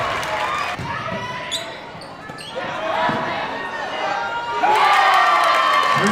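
Live gym sound from a high school girls' basketball game: a ball bouncing on the hardwood floor, with voices of players and crowd. The sound dips a couple of seconds in and grows louder again near the end.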